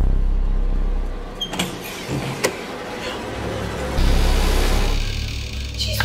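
A deep rumble starts suddenly, with two sharp clicks about one and a half and two and a half seconds in, and swells loud again about four seconds in.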